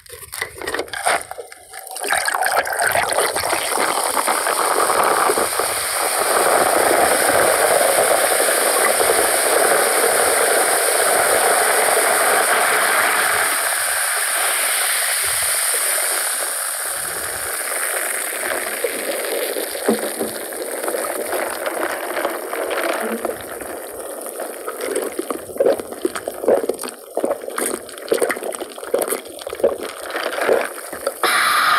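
Cola poured from a plastic bottle into a glass mug packed with ice, a steady gushing pour. It then fizzes as the bubbles rise, the hiss thinning and breaking into scattered crackles toward the end.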